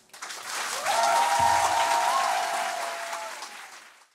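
Audience applauding at the end of a live choir performance, building within the first second and tapering off toward the end.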